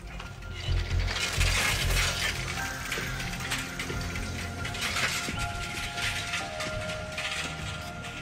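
A bicycle rolling away, its freewheel hub ticking rapidly as it coasts, with soundtrack music holding a few sustained tones underneath.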